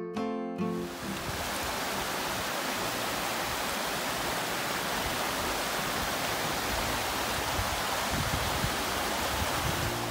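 A rocky mountain stream rushing over stones, a steady, even rush of water. Acoustic guitar music fades out within the first second.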